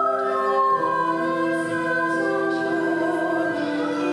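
Music: a choir singing a slow piece in long held notes.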